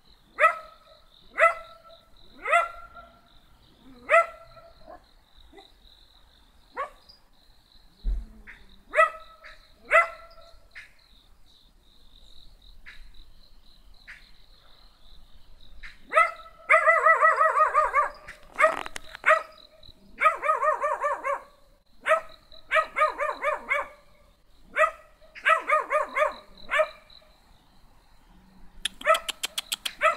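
A dog barking: single sharp barks every second or two at first, then, about halfway through, longer runs of quick repeated barks. A faint steady high tone runs underneath.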